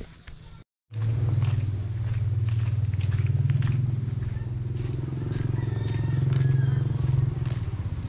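Motorcycle engine running steadily, starting about a second in, its pitch rising slightly near the end, with faint regular clicks about twice a second.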